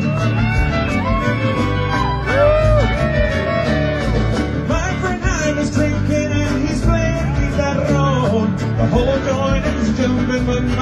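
Live band music in an instrumental stretch of a song: a lead line bending up and down in pitch over a steady bass and drum beat, with guitar.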